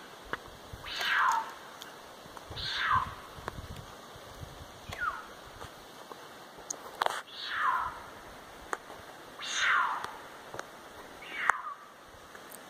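Female cougar calling for a mate: six high calls, each dropping steeply in pitch over about half a second, spaced a couple of seconds apart.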